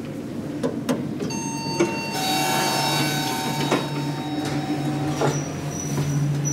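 Elevator car doors sliding shut with a whine and a few clicks. A low steady hum then sets in and strengthens as the telescopic hydraulic elevator starts its run.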